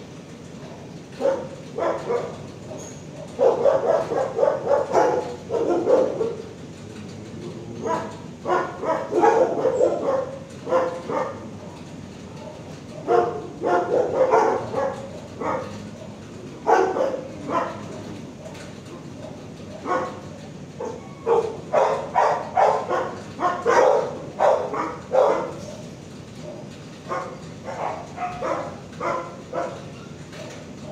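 Dogs barking in a shelter kennel, in runs of several quick barks with short pauses between runs.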